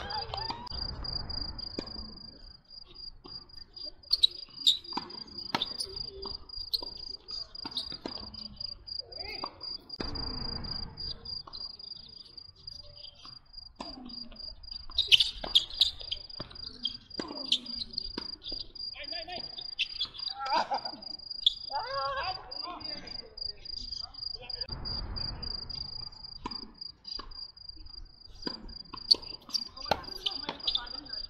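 A cricket chirping in a steady, rapid, high-pitched pulsing trill, over tennis rallies: sharp racket hits on the ball, with a cluster of the loudest hits about halfway through and more near the end.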